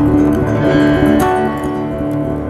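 Live jazz combo music: acoustic guitar chords over piano and double bass, with the chord changing about a second in.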